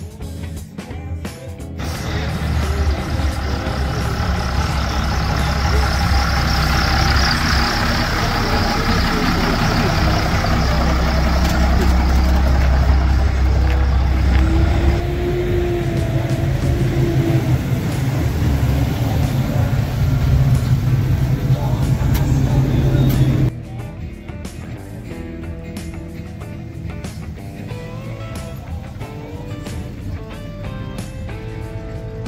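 Classic car engines running loud and steady as cars drive slowly past, the low rumble changing to another engine's note about halfway through. The engine sound cuts off abruptly and gives way to background music with guitar.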